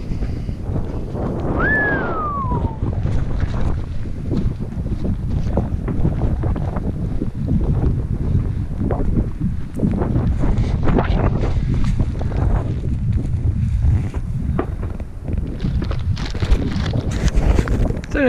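Strong wind buffeting the action camera's microphone in a heavy, gusting low rumble, with a brief falling whistle about two seconds in. A few short sharp cracks sit among the wind, heard as distant shotgun fire from a shooting club.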